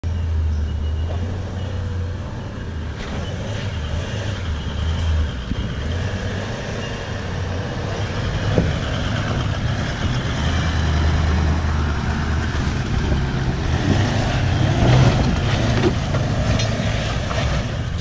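Toyota Land Cruiser 200 Series V8 engine running at low revs as the four-wheel drive crawls over ruts and rocks, a steady low rumble. There is one sharp knock about halfway through, and scattered crunches and clicks near the end as the tyres work over rock and dirt.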